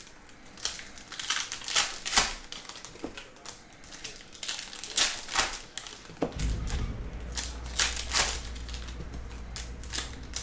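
Foil trading-card pack wrappers crinkling and being torn open by hand, with cards handled and flipped through in quick, sharp rustles. A low steady hum comes in about six seconds in.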